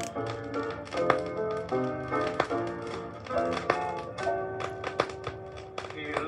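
Instrumental introduction of a 1960s Swedish gospel record: a melody of short, sharply plucked notes over chords, ahead of the singing.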